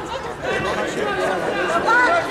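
Several voices talking and calling out over one another in a large echoing hall, the chatter of spectators and coaches around a judo mat, with one louder call near the end.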